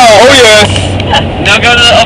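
Excited voices whooping and laughing loudly inside a moving van for about half a second, cheering a semi truck that has just honked its horn. Then the cabin drops quieter, leaving the low hum of the van's engine and road noise.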